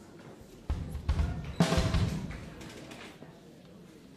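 A short burst of drum-kit hits starting under a second in. The loudest is a bright crash a little later that rings out for about a second before fading.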